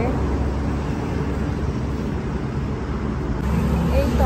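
Steady low rumble of road traffic, with no distinct events.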